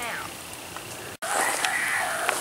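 Ghost box app playing through a phone speaker: a brief warbling, voice-like glide at the start, then after a sudden dropout about a second in, a louder hiss of radio static with faint voice-like fragments.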